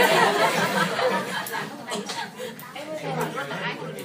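A classroom of students chattering over one another, with laughter about a second in. The chatter grows quieter toward the end.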